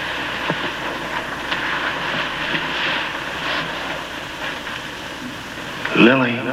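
Steady rushing of wind and rain from a night storm, with a louder wavering sound rising right at the end.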